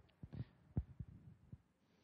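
Near-quiet pause with a few faint, soft thumps, about five in the first second and a half.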